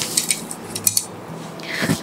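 Light metallic clinking, a few quick chinks in two small clusters, as an embroidered sari with metal-trimmed tassels is handled.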